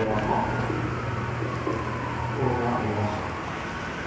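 Indistinct background voices murmuring over a steady low hum.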